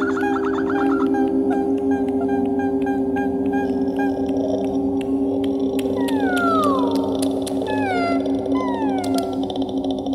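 Layered, multitracked female voice in extended vocal technique: steady held drone tones under quick repeated short vocal figures, then from about six seconds a series of long, smooth falling glides, with scattered sharp clicks.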